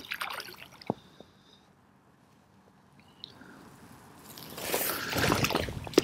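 Water splashing and dripping from a hooked common carp being played in on a pole: quiet in the middle, then the splashing builds up over the last two seconds.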